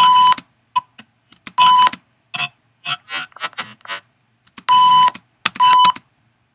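A TV-style censor bleep tone sounding in four short bursts, each about a third of a second long. Brief choppy snippets of other audio come in between, as the edited track is played back in bits.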